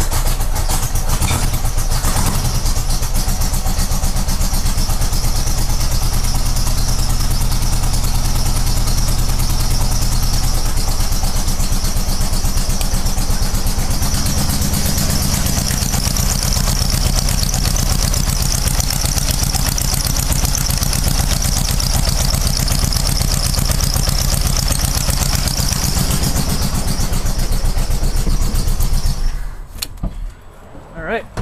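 Old Volkswagen's air-cooled flat-four engine running steadily after its flooded side was dried out. One cylinder is not firing: the owner suspects something wrong inside that cylinder. Its note changes about halfway through, and the engine is shut off just before the end.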